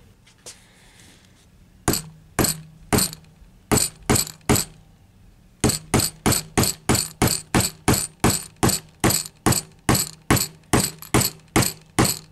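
A hatchet striking the glass envelope of a 5Y3 rectifier tube near its base, with sharp, ringing taps: three strikes, a pause, three more, then a steady run of about three strikes a second from about halfway in. The glass holds and does not break: "pretty tough".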